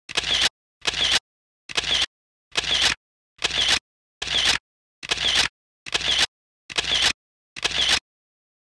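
Camera shutter sound effect repeated about ten times, one short burst a little under every second with silence between.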